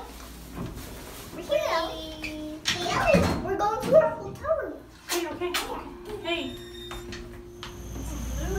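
Young children babbling and making wordless vocal sounds, with a few short knocks among them.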